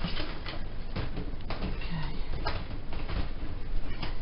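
Handling noise from an iCandy Strawberry pushchair: fabric rustling and several plastic-and-metal clicks and knocks as the seat unit is lowered onto the chassis and clipped into place.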